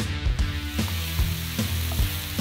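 Sliced mushrooms, carrots and onion sizzling as they fry in oil in a pan and are stirred with a wooden spatula; the sizzle comes up about half a second in. Background music with a steady beat plays throughout.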